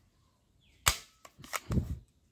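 Plastic toy shotgun fired once: a single sharp snap about a second in, followed by a few lighter plastic clicks as it is handled.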